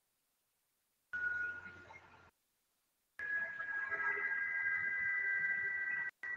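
Steady electronic tone coming through the online call's audio, in two stretches: a short one about a second in, then a longer, slightly higher one with a second tone above it from about three seconds in, over faint hiss.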